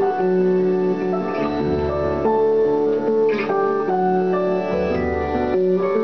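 Instrumental stretch of a slow live song: held keyboard chords over acoustic guitar, the chords changing every second or so with a deep bass note under some of them.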